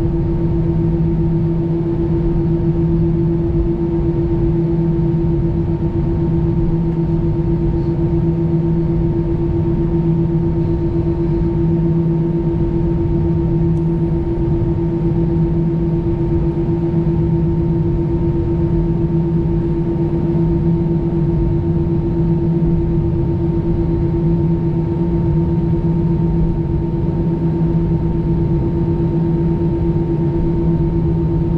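Airbus A320 cabin noise while taxiing: the engines and cabin air running as a steady drone, several unchanging tones over a low rumble.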